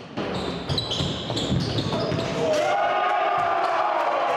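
Live basketball game sound in a gym: the ball bouncing and sneakers squeaking on the wooden court. From about two and a half seconds in comes a long held shout in the hall.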